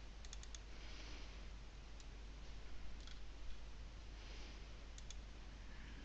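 Faint computer mouse button clicks: a quick run of about four just after the start, then single clicks and pairs every second or two, as folders are selected and double-clicked open.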